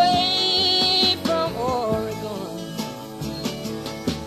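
Studio rock recording: acoustic guitar backing under a loud sustained note that slides up at the start, holds for about a second, then wavers downward.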